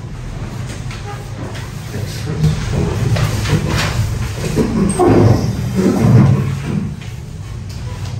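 Classroom background: a steady low hum with indistinct, murmured voices rising for a few seconds in the middle, and faint paper rustling as worksheets are handed out.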